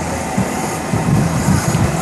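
Electric bike riding over pavement: a low steady motor hum under rough road and wind noise, with irregular low knocks and rattles from the frame.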